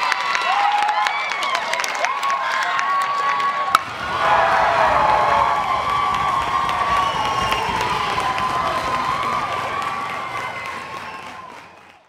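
Children and a crowd cheering and shouting in celebration, with high excited whoops. About four seconds in there is a sharp click, and a fuller stretch of crowd cheering with a low rumble follows, fading out at the end.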